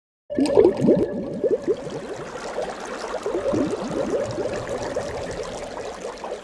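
Underwater bubbling sound effect: bubbles gurgling over a steady low hum. It starts suddenly just after the beginning and is loudest in the first second.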